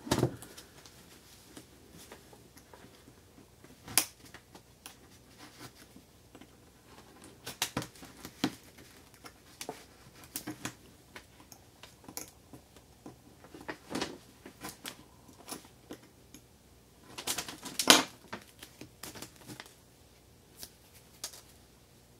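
Hands working with servo tape and dimes: scattered light clicks and taps, with a louder cluster of them late on.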